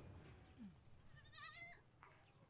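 Near silence, broken about a second and a half in by one short, faint, wavering animal call, like a goat bleating.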